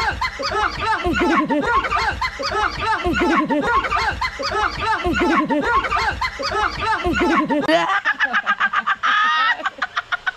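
Women laughing and shrieking with high, cackling laughter, several voices overlapping. About eight seconds in it changes to a quick, regular run of short pulses.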